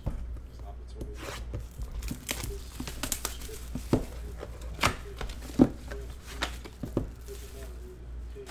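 Plastic shrink wrap being torn and peeled off a trading-card box: a run of crinkling and crackling, with several sharp, louder snaps in the middle of the run.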